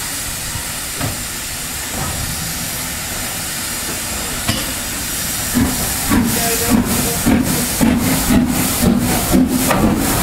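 LNER N2 0-6-2 tank engine No. 1744 approaching bunker-first, with a steady steam hiss. From about halfway it gets louder, with rhythmic exhaust beats about three a second over a low running rumble as it draws close.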